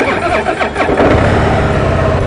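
A 2013 Harley-Davidson Heritage Softail Classic's 103 cubic inch V-twin engine starts abruptly and revs briefly. About a second in it settles into a steady, loud run.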